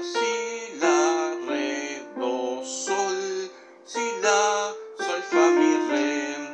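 Electronic keyboard playing a slow hymn melody over chords, with a low bass line underneath and a new note or chord about every half-second to second: the hymn's fourth and final phrase.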